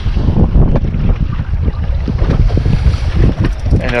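Wind buffeting the camera microphone on a small boat at sea: a loud, gusty low rumble.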